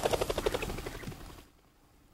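Rapid whirring wingbeats of a game bird flushed into flight, fading out over about a second and a half.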